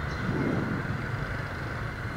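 Steady rumble of dense motorbike and car traffic, heard from a moving scooter in the thick of it, rising slightly in loudness about half a second in.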